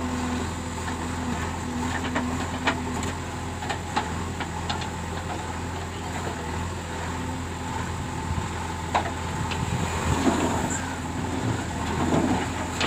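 JCB 3DX backhoe loader's diesel engine running steadily while the backhoe digs soil and swings a loaded bucket over to a tipper truck. Occasional sharp knocks sound through it, and the noise swells for a moment about ten seconds in.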